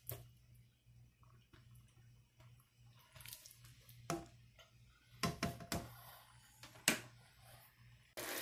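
A plastic spatula stirring a wet sausage and rice mixture in a nonstick skillet: a few scattered scrapes and taps against the pan, with soft wet squelching. A low steady hum runs underneath.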